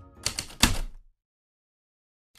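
Typewriter keystroke sound effect: a handful of sharp clacks in the first second, the last one the loudest, followed by dead silence.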